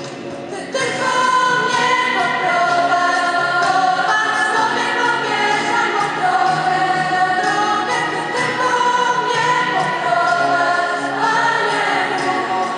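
A school choir of mostly girls' voices singing with sustained, held notes, getting louder about a second in.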